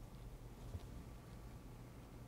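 Quiet lecture-room tone with a steady low hum through the amplified microphone, and one soft, brief thump about three quarters of a second in.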